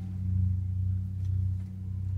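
A low, steady hum, a sustained bass tone that swells slightly about half a second in.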